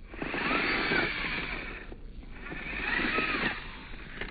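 Small electric motor and gearing of a 1/24-scale Mofo Bouncer RC crawler whining in two bursts of throttle, each rising and falling in pitch, with tyres clicking and scrabbling over rock.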